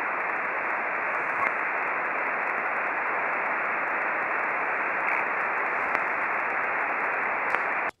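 Steady static hiss from an HF amateur radio transceiver on single-sideband receive, with no voice coming through while a reply is awaited. It stops abruptly near the end.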